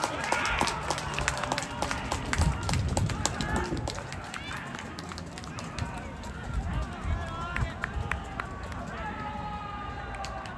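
Footballers' voices shouting and calling across an open pitch just after a goal, loudest in the first second, then fainter distant calls, with scattered short knocks.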